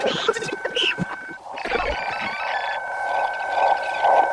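Eerie film-soundtrack sound effect played through cinema speakers: a steady high whine that drops out about one and a half seconds in and comes back, over a rushing noise that swells toward the end.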